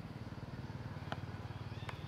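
A low engine running steadily, its firing heard as a fast, even pulse, with two short sharp clicks over it, about a second in and near the end.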